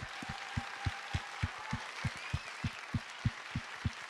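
Theatre audience and panel applauding steadily, with one nearby person's claps standing out at about three to four a second.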